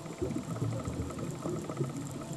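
Scuba diver's exhaled air bubbling from the regulator, heard underwater: an irregular, continuous gurgle.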